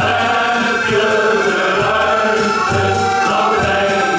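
Men's shanty choir singing a sea song live, accompanied by accordion and a regular drum beat.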